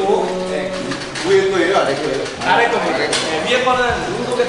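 People talking in a room, several voices overlapping in indistinct chatter.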